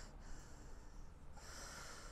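Faint breathing, two soft breaths, the second near the end.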